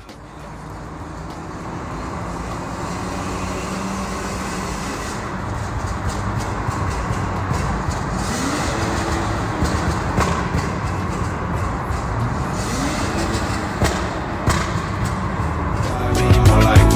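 BMW E39 engine and exhaust heard from inside the cabin while accelerating through a road tunnel, growing louder over the first few seconds. The engine note climbs in pitch about eight seconds in and again about thirteen seconds in.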